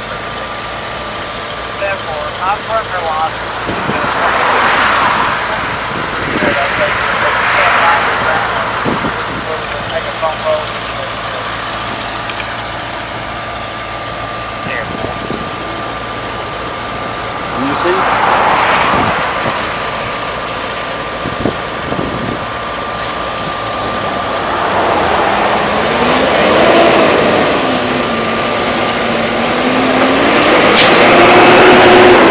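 Semi-truck engine running at low speed as the rig pulls slowly out, with three loud hisses of air about a second long each. In the last few seconds the engine pitch rises and falls and grows louder as the truck draws away past.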